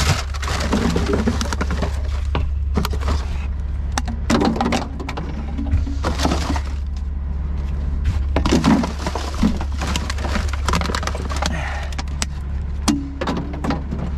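Hands rummaging through recycling rubbish: plastic bottles, paper cups and cardboard rustling, crinkling and clattering in many small irregular knocks, over a steady low hum.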